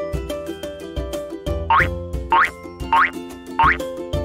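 Upbeat children's background music with a steady beat, joined in the second half by four short rising whistle-like cartoon sound effects, each a quick upward slide in pitch.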